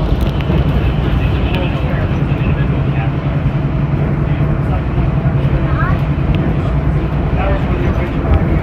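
Inside a Walt Disney World Mark VI monorail train cruising along its beam: a steady low running rumble throughout. Passengers' voices can be heard in the cabin over it.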